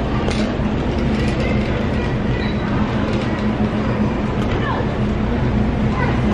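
Wire shopping cart rolling, its wheels rumbling and the metal basket rattling steadily, with scattered small clicks.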